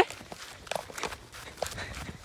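Footsteps of a person walking through grass: several separate steps at an uneven pace.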